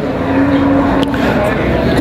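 A motor vehicle engine running, a steady hum that fades out about a second and a half in, over the noise of a crowd.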